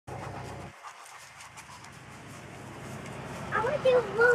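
Fila Brasileiro (Brazilian mastiff) panting softly, followed by a high-pitched voice starting to speak near the end.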